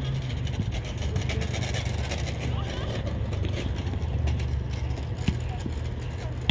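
Youth soccer practice ambience: a steady low rumble with faint children's voices, and a sharp thud of a soccer ball being kicked on artificial turf near the end.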